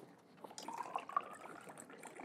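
80 proof alcohol poured from a bottle into a glass jar, a faint trickle whose pitch rises as the jar fills.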